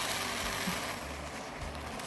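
Steady hiss with a low rumble from a steamer pot on the boil, easing slightly toward the end.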